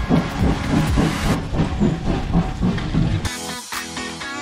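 Steam locomotive pulling a train out of a station: hissing steam and exhaust beats repeating a few times a second, with music playing over it. The train sound cuts off about three seconds in, leaving guitar music.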